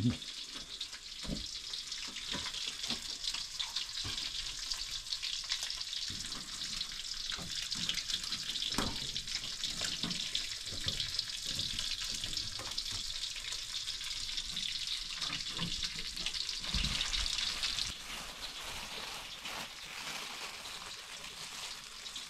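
Food frying in hot oil: a steady sizzle with fine crackling and a few soft knocks, easing off a few seconds before the end.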